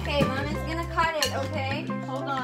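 Background music: a song with a singing voice over a steady bass line.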